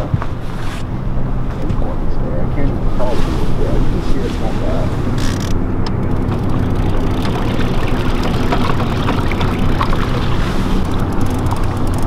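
Boat motor running steadily at trolling speed, a low even drone, with wind rushing over the microphone.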